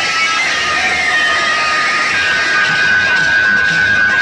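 Loud music playing from towering stacks of DJ speaker cabinets, with pulsing bass and a long, high held tone coming in about halfway through.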